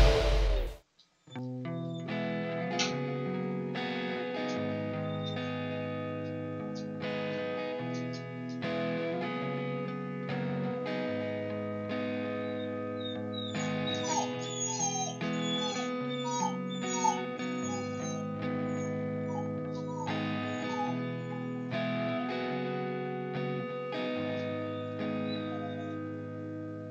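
A loud rush of noise cuts off about a second in, then guitar background music runs on. Around the middle, a golden retriever whines in a string of short, high, rising-and-falling cries over the music.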